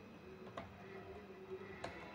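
Faint computer keyboard keystrokes: two isolated key clicks about a second apart, over low room hiss.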